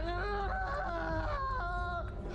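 A man's drawn-out, wavering cry of pain, a strained high wail that holds for about a second and a half, breaks, then goes on a little lower.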